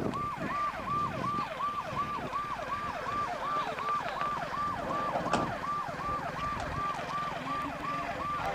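Electronic vehicle siren sounding a fast repeating yelp, each short tone rising sharply and sliding back down, about three times a second.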